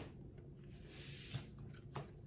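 Faint rustling and a few light clicks of tarot cards being handled on a table, with a soft sliding sound about a second in.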